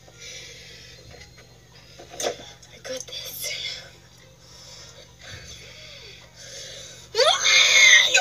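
A girl's voice: faint, scattered vocal sounds, then about seven seconds in a sudden loud, high-pitched vocalisation with swooping pitch.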